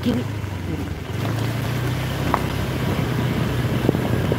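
Motorcycle engine running steadily while the bike is ridden, with wind and road noise on the microphone; the engine grows a little louder about a second in.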